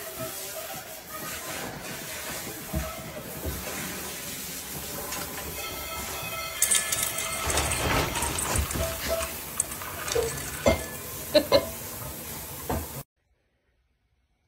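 Dishwasher racks and dishes rattling and clinking as a puppy clambers about inside the open dishwasher, over a steady hiss. The knocks get louder and busier in the second half, with a few sharp clinks shortly before the sound cuts off near the end.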